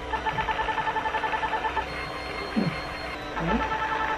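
Ulthera ultrasound transducer beeping as it delivers a line of treatment pulses: a rapid train of beeps, about ten a second, lasting under two seconds. A second train starts near the end, with a short murmur of a voice in the pause between.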